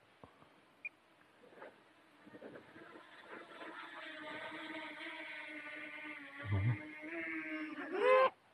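Propellers of a small folding quadcopter drone whining as it comes down to be hand-caught: faint at first, growing into a steady hum, with a low thump partway through and a sharp rise in pitch at the very end.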